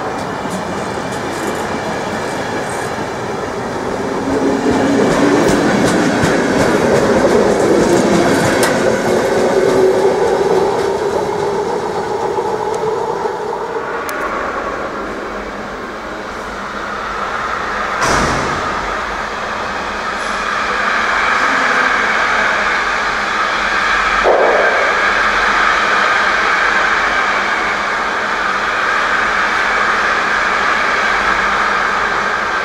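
Passenger coaches rolling along the station platform, growing louder and then easing off. About 14 s in, a container freight train's wagons roll past instead, heard through the glass of a station waiting room, with a sharp knock about 18 s in.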